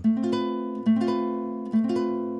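Nylon-string classical guitar sounding an A minor chord with an added ninth and an augmented fifth, three times about a second apart, each chord left to ring.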